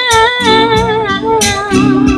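A woman sings one long held note with vibrato over a country backing track of guitar and drums, played live through a PA system.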